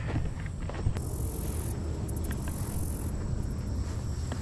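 Rustling and a low rumble from a person moving about on grass, with a few light knocks. A high insect buzz runs from about one second in to about three seconds in.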